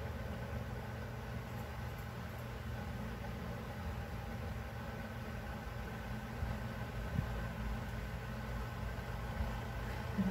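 Steady low background hum of a running motor, unchanging throughout, with a few faint soft taps in the second half.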